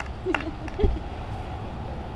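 A woman's brief laughter: a few short low 'ha' sounds in the first second, one of them close and heavy on the microphone, then a steady outdoor background hum.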